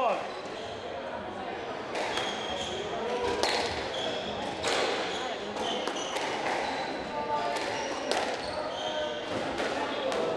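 Squash rally: the ball is struck by rackets and hits the court walls in a string of sharp cracks about a second apart. Short high squeaks from players' shoes on the wooden court floor come between the hits.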